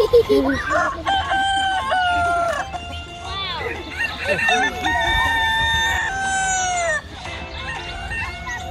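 Rooster crowing twice, two long drawn-out crows each ending in a falling note, with short bird calls between them.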